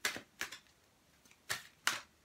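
Tarot cards being flipped and laid down on a table: four sharp snapping clicks, two near the start and two about a second and a half in.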